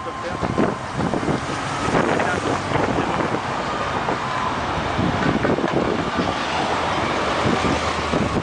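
Escort motorcycles and official cars passing close by on a street, with wind noise on the microphone.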